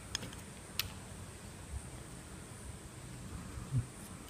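Faint clicks and handling of small plastic jet-pump parts as a screwdriver pushes the stator out of its housing, with one sharper click about a second in.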